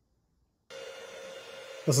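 A metal lathe running, a faint steady hum with a thin steady tone, starting a little under a second in after a moment of dead silence. A man's voice begins right at the end.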